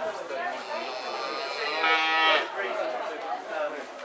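A cow mooing once, a short call of about half a second around two seconds in, over background chatter of people.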